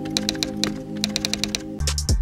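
Computer-keyboard typing sound effect, rapid uneven key clicks, over a held ambient music chord. Near the end a drum beat comes in.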